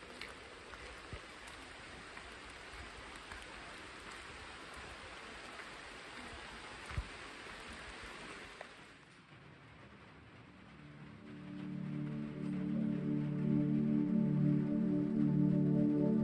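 Steady rain, with a single short knock about seven seconds in. The rain fades out about nine seconds in, and ambient music of held, sustained chords fades in and grows louder.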